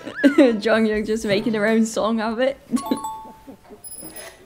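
Variety-show soundtrack: voices laughing and talking over background music, then a two-note falling chime sound effect about three seconds in.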